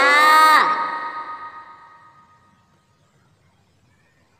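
A child-directed voice finishes saying "umbrella", and its echo trails off over about two seconds into near silence.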